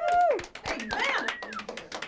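Hands clapping in a small room, with two short gliding vocal cries over it: one right at the start and a higher one about a second in.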